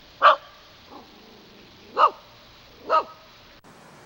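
A dog barking: three loud single barks about a second apart, with a faint short bark after the first.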